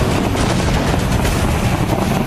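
Soundtrack sound effects of an animated urban combat scene: a loud, steady, dense rumble of vehicles and battle noise with strong low end and no distinct single blasts.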